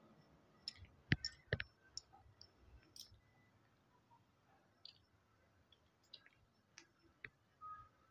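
Faint, scattered clicks and light knocks, about a dozen, the loudest pair about a second in: handling noise as the camera is moved over the written page.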